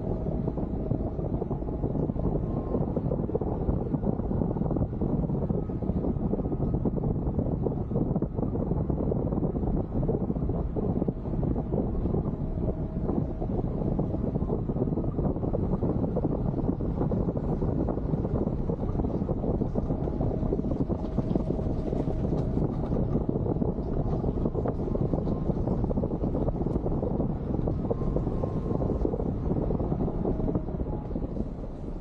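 Suzuki Jimny driving steadily along a gravel forest track: engine and tyre noise, with wind on a roof-mounted microphone.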